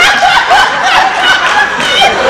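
Live audience laughing, many voices at once without a break.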